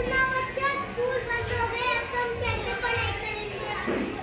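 A group of children singing together, in long held notes.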